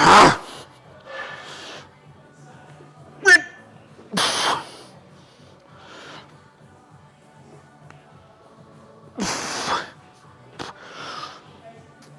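A man's hard, forceful exhalations, a few seconds apart, as he strains through a set of machine chest presses taken to failure. About three seconds in there is a short pitched grunt.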